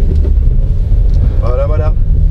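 Steady low rumble of a Citroën C4 Grand Picasso HDi diesel and its tyres, heard inside the cabin as the car pulls away at low speed. A brief bit of voice comes near the end.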